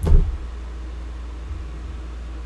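A loud, low thump as the desk is bumped, then a steady low hum with a fainter knock about one and a half seconds in.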